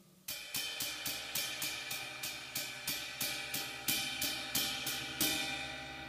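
Red thin-fibred Flix drum brush played on a cymbal in a steady rhythm of about four strokes a second, the cymbal ringing under the strokes; the strokes stop about five seconds in while the ring carries on. The sound is very low in volume, even when played a bit hard.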